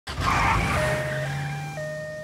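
Cartoon ambulance pulling away: a burst of engine and exhaust noise, then a two-tone siren switching between a low and a high note about every half second over a steady engine hum.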